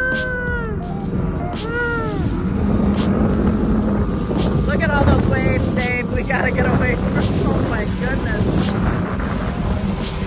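Motorboat under way across choppy lake water: a steady low motor and water rush with wind buffeting the microphone. Indistinct voices rise over it in the first couple of seconds and again briefly around five to seven seconds in.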